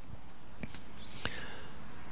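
A pause in a man's speech into a handheld microphone: low steady background hiss with a couple of faint clicks and a soft intake of breath about a second in.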